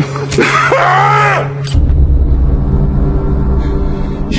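A man's drawn-out, wordless shout of about a second, over a low steady music drone; just under two seconds in a deep rumble sets in and holds to the end.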